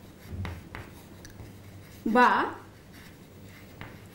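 Chalk writing on a chalkboard: a run of short taps and scrapes as letters are written.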